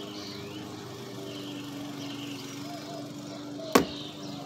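A steady low motor hum, with faint high chirps and one sharp click just before the end.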